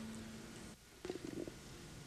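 A man's drawn-out, hummed "um" of hesitation, held on one low pitch and trailing off, followed about a second in by a brief faint murmur.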